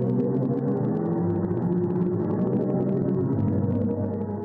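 NASA's synthesized black hole sonification: pressure waves from the black hole in the Perseus galaxy cluster, shifted up into hearing range. It sounds as a steady, eerie drone of layered low, sustained tones.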